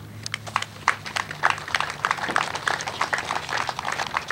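An audience clapping: many irregular, overlapping hand claps, with a steady low hum underneath.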